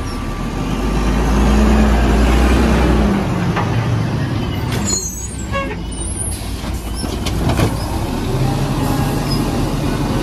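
A Mack LE refuse truck's LNG engine revs as the truck rolls up, then settles. Knocks and clanks come from the Amrep Octo automated arm as it reaches for and grips a recycling cart, and the engine revs up again as the arm lifts the cart.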